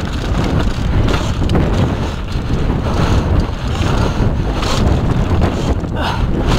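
Heavy wind rumble on an action camera's microphone as a downhill mountain bike runs fast down a dirt trail, with tyre noise from the dirt and a few short rattling knocks from the bike over bumps.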